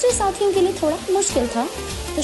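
A woman's voice narrating over background music with a steady bass line.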